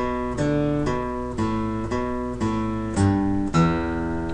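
Steel-string acoustic guitar playing a slow single-note riff on the low strings, a new note about every half second, cascading down and back up.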